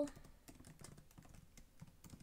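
Typing on a computer keyboard: a quick, irregular run of faint key clicks.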